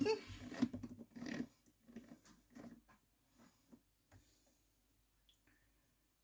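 Faint, scattered clicks and handling sounds as a Thermomix's selector dial is turned and its touchscreen tapped to set the cooking time. A few isolated ticks come in the middle, then it falls nearly silent.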